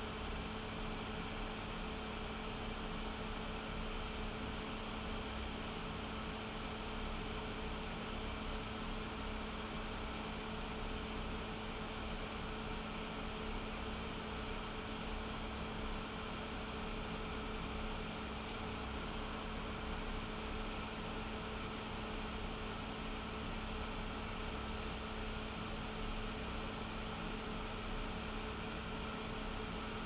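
Electric fan running steadily, an even whir with a low hum, with a few faint light ticks.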